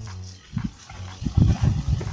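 Irregular low knocks and rumbles from a mountain bike working over a rough, muddy trail, bunched together in the second half.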